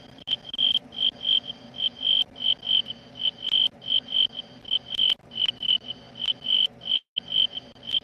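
A cricket chirping steadily, short high-pitched chirps about three or four a second, with a brief cut-out in the sound about seven seconds in.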